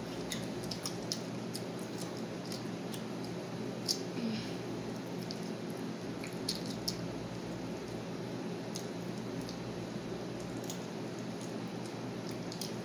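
Close-up eating sounds of shrimp being chewed: soft wet mouth smacks and small clicks scattered every second or two, over a steady low hum.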